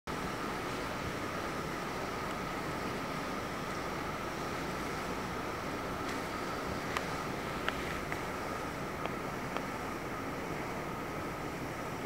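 Steady gallery room tone: an even hiss with a faint steady high whine, and a few light clicks around the middle.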